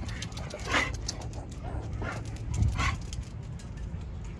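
A dog giving two short barks, about two seconds apart.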